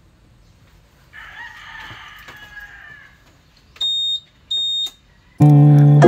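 A rooster crowing, one drawn-out call lasting about two seconds. Then two short, high electronic beeps, typical of a motor scooter's alarm answering its remote. Loud background music comes in near the end.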